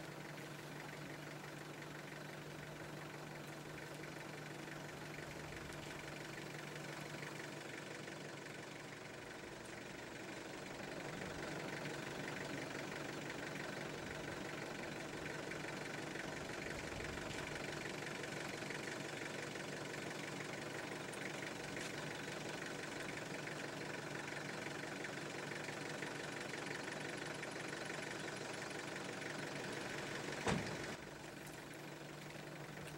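Small flatbed truck's engine idling steadily, growing a little louder about eleven seconds in.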